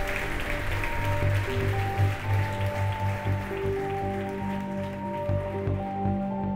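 Audience applause dying away under instrumental outro music, which has held notes over a bass line.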